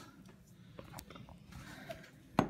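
Quiet room tone with faint handling noise from a glass bowl of water being held and moved by hand, and one light click about halfway through.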